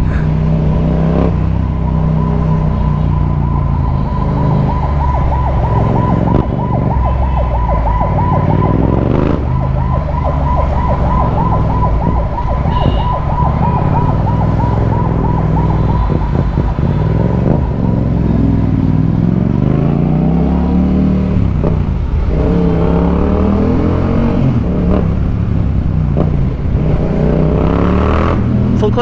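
Yamaha MT-07's 689 cc parallel-twin engine running and revving in traffic, its pitch climbing and dropping back through gear changes in the last several seconds. A steady high warbling tone sounds over it for roughly the first half.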